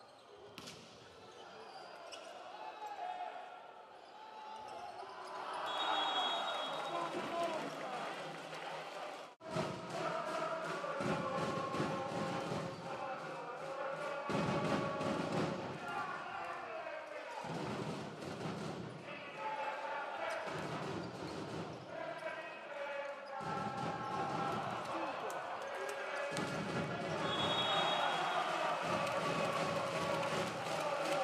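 Indoor volleyball rally in a large arena: repeated sharp ball hits and a steady crowd din of voices and clapping. A short high referee's whistle sounds twice, once near the start and once near the end.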